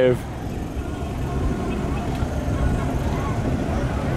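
Road traffic: a steady low rumble of cars crawling and idling in a heavy, nose-to-tail queue.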